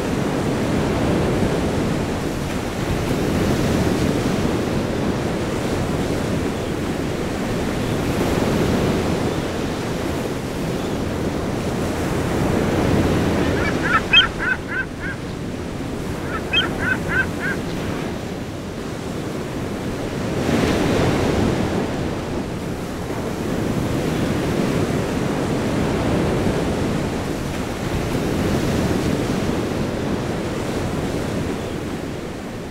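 Ocean surf breaking and washing in, swelling and easing every few seconds. About halfway through a gull calls in two quick runs of short, high squawks.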